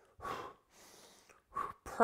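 A man breathing hard through the mouth during bent-over rows: a sharp breath out, a fainter, longer breath after it, and a short breath near the end.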